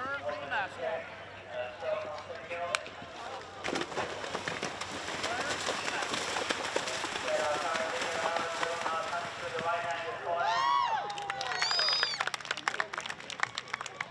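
A horse galloping through a shallow water jump, hooves splashing and striking in quick succession, with spectators' voices and calls around it.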